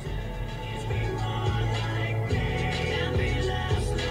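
Music playing from the Dodge Challenger SXT's factory car stereo, heard inside the cabin, growing louder over the first second and then holding steady.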